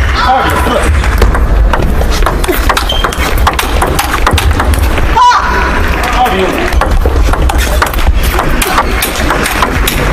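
Table tennis hall between rallies: voices over a steady low hum, with scattered light clicks. About five seconds in comes one sharp ping, typical of a table tennis ball bouncing.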